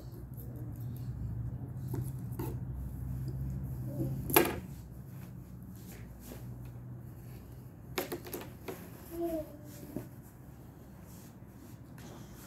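Metal dressmaking shears set down on a cutting table with one sharp clack about four seconds in, with smaller knocks of handling a few seconds later.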